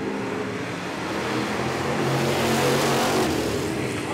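A pack of street stock race cars running on a dirt track, their engines swelling louder as the cars come through the turn and easing off near the end.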